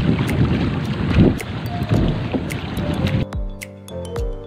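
Rough, uneven rush of wind buffeting the microphone and water on a boat moving over open sea, in strong gusts, cutting off about three seconds in as music takes over; a music beat runs faintly underneath.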